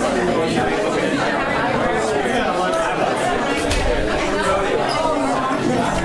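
Audience chatter: many people talking at once in overlapping conversations, with no single voice standing out, at a steady level.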